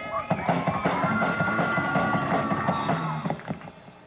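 Rock drum kit played in a fast fill of rapid hits for about three seconds, with a held note ringing over it, then dying away near the end.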